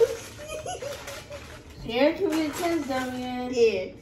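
Voices without clear words, including a young child's vocalizing; a long drawn-out, wavering vocal sound fills the second half.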